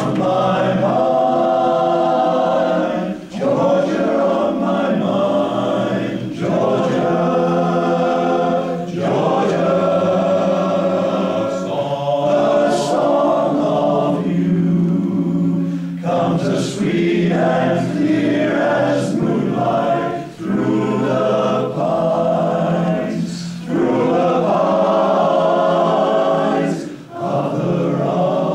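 Male voice choir singing in harmony, in phrases of a few seconds with short breaks between them.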